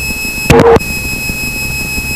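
Stall warning horn of a Socata TB10, one steady high-pitched tone through the landing flare, broken briefly by a short louder sound about half a second in. The horn sounds as the speed bleeds off and the wing nears the stall just before touchdown. A low engine rumble sits underneath.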